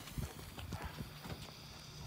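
Faint outdoor quiet with a few soft, scattered taps over a low steady hum.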